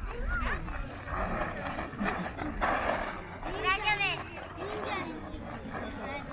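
A few short pitched vocal cries, each rising and falling, the clearest just before the four-second mark, over a noisy outdoor background with a rushing patch in the middle.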